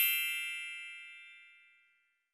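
A bright chime sound effect rings out with several high tones together, fading steadily away and gone by about a second and a half in.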